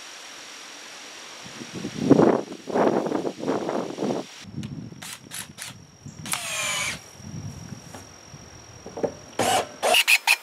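Cordless drill run in short bursts, its motor whine rising and falling in pitch, with several quick trigger pulses near the end. Before it, a few seconds of loud knocking and rustling handling noise.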